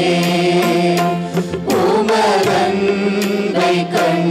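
Live praise-and-worship music: a group of singers with two electronic keyboards and percussion strikes over a steady sustained low note.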